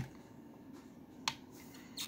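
Sharp plastic clicks from handling the dust cup and filter lid of a Bissell CleanView OnePass upright vacuum, one at the very start and one a little past the middle, with faint room tone between.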